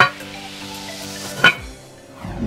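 Porcelain toilet tank lid clinking against the tank as it is set in place: two sharp clinks, one at the start and one about a second and a half in, over steady background music.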